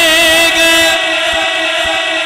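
A male naat reciter singing unaccompanied into a microphone, holding one long note at a steady pitch with a slight waver.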